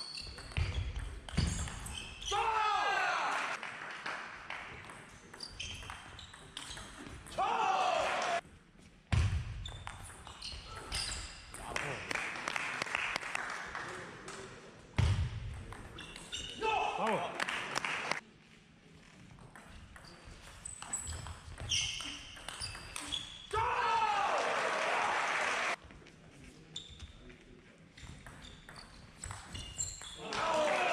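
Table tennis rally: the ball clicking back and forth between bats and table. Several loud shouts of one to two seconds break in after points.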